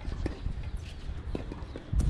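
A few spaced light knocks of tennis play, the ball bouncing and struck on an outdoor hard court, over a low, uneven rumble.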